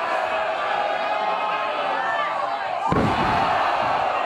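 A piledriver landing: one sharp, deep thud of two wrestlers hitting the wrestling ring's mat about three seconds in. It rings on briefly over the crowd's voices.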